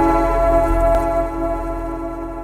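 Logo outro jingle: a held electronic chord with a sharp tick about a second in, fading slowly.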